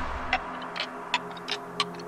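Film soundtrack intro: sharp clock-like ticks, about five in two seconds, over a faint sustained low drone.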